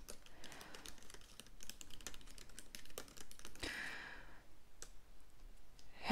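Typing on a laptop keyboard with long fingernails: a run of soft, irregular key clicks.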